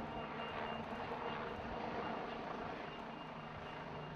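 A vehicle engine running steadily, a low hum under general street noise.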